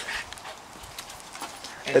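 Footsteps on brick paving, a few light scattered taps and scuffs.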